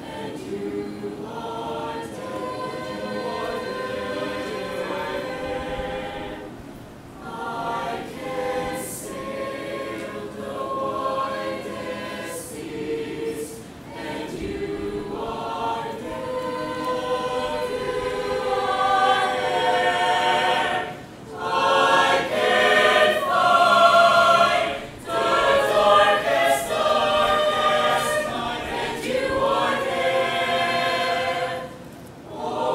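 Mixed choir of men's and women's voices singing in parts, with short breaks between phrases, growing louder in the second half.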